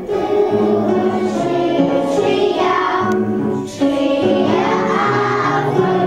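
A group of children and women singing a song together in chorus, notes held and moving step by step, with a short break about three and a half seconds in.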